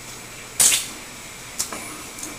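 A man tasting barbecue sauce off his hand: one short, loud slurp a little after the start, then a faint click with a brief trailing sound near the end.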